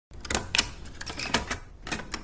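Camera gear clicking: a quick, irregular run of sharp mechanical clicks, several a second, as a lens and camera controls are handled.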